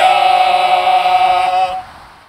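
A group of men singing a cappella, holding one long final note together, which breaks off near the end and leaves a short fading tail.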